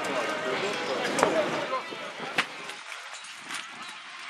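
Indistinct voices of people talking in the open air, dying down after about two and a half seconds. Two sharp clicks come about a second in and about two and a half seconds in, the first the loudest moment.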